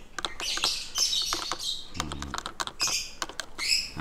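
Small birds chirping in short, high calls, several times over, with sharp little clicks and taps from a small plastic vial being handled.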